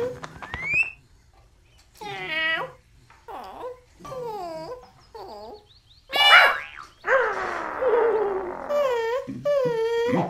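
Cartoon dog character making a string of separate whining, moaning vocal noises that bend up and down in pitch. A loud, rough squawk from a cartoon bird comes about six seconds in, followed by more falling vocal noises, and a short rising whistle sounds at the very start.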